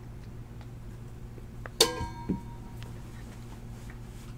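A single sharp clink with a short ringing tone about two seconds in, followed half a second later by a softer knock, over a low steady hum.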